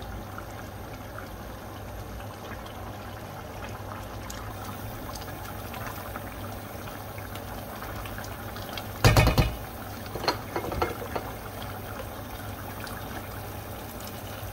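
Curry simmering in a pot on the stove, a steady bubbling hiss. About nine seconds in, a spoon stirring the pot knocks sharply against it, followed by a few softer knocks.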